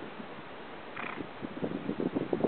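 Steady outdoor hiss with a brief, higher-pitched sound about a second in, then gusts of wind rumbling on the microphone that build near the end.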